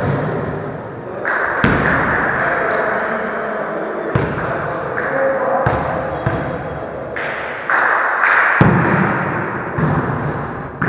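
A volleyball being hit and hitting a wooden gym floor during a rally: about five separate thuds one to two and a half seconds apart, each echoing in the hall.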